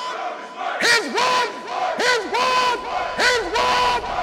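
A group of voices shouting in short bursts, about five times, each shout falling in pitch, over a steady held tone in the outro music.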